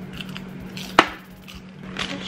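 Quiet eating sounds with one sharp click about a second in, a white plastic fork knocking against a takeout food container. A steady low hum runs underneath.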